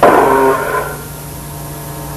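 Lo-fi noisecore recording: a loud, distorted burst falling in pitch for just under a second, which fades into a steady hum with faint held tones for the rest.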